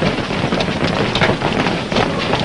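Commotion of a crowd rushing across a stage floor: a dense, steady clatter of many footsteps and scuffling.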